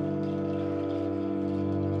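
Live instrumental drone: a bowed double bass and two woodwinds hold long, steady notes together, forming a dense chord with many overtones and no breaks.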